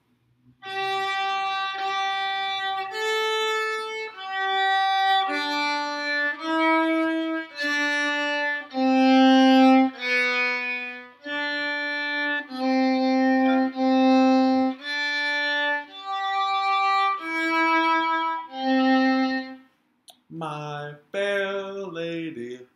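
A solo violin plays a slow, simple sight-reading line one bowed note at a time, each note lasting about a second. The line starts on the G on the D string and runs G, G, A, G, D, E, D, C, B, D, C, C, D, G, E, C, ending with the low C about 20 s in.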